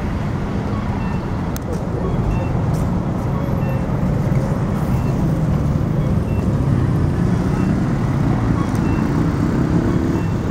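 Steady low rumble of a motor vehicle engine running, with street traffic noise and faint voices of people around.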